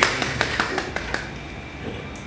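A few people clapping at the end of a song, the claps thinning out and stopping about a second in.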